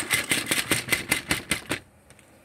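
A rapid, irregular run of sharp plastic clicks and rattles, about a dozen in under two seconds, over a light hiss: small plastic toy pieces being handled. It stops shortly before the end.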